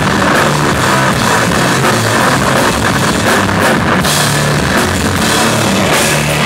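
Sludge metal band playing live at full volume: heavily distorted guitar and bass in a slow riff of held low notes, over drums and cymbals.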